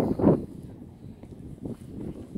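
Wind buffeting a handheld camera's microphone, heaviest in the first half second and then lighter, with a few soft footfalls on pavement.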